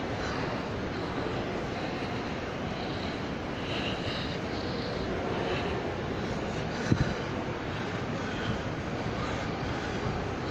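Steady ambient rush of a large indoor shopping mall, a constant even noise of ventilation and distant background, with a brief double thump about seven seconds in.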